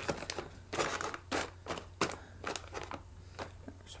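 Snack pouches crinkling and rustling as they are handled in a cardboard box: a series of short, irregular crackles.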